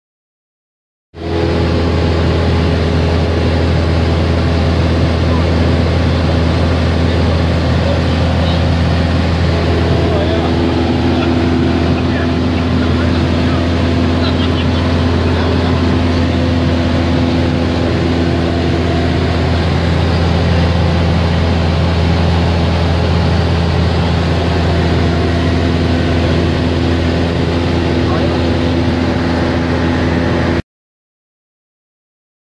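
Steady drone of a light propeller plane's engine and propeller in cruise, heard from inside the cabin, with a constant low hum under a wash of noise. It starts abruptly about a second in.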